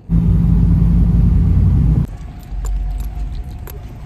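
Loud, steady low rumble of a car interior on the move, heard from inside the cabin. It cuts off suddenly about halfway through, giving way to quieter handling noise with scattered light clicks and jingles.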